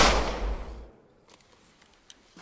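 A single gunshot, a sudden loud bang that dies away over about a second, then near silence.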